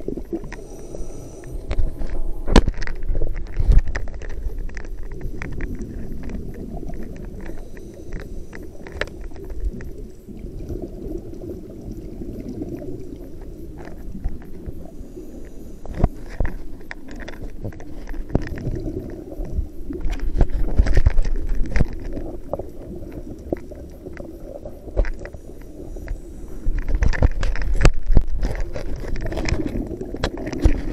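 Underwater ambience of a scuba dive: a low steady wash with bursts of gurgling exhaled regulator bubbles, about two seconds in, around twenty seconds in and again near the end, and scattered sharp clicks between them.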